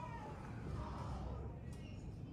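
Quiet room tone with a faint, brief hum from a person's voice about a second in.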